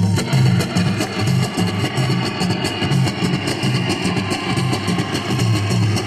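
A live group plays a fast, steady percussion rhythm on congas and hand-held frame drums, over a plucked string instrument.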